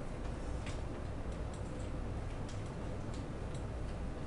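Computer keyboard keystrokes: about eight sharp clicks at uneven intervals as digits are typed, over a steady low hum.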